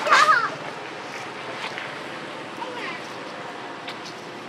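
Baby macaque squealing: a loud burst of high, wavering cries in the first half-second, then a few fainter cries, over a steady outdoor hiss.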